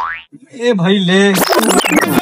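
Cartoon-style comedy sound effects: a quick rising boing at the start, then a short vocal sound, then a bright burst with falling tones near the end.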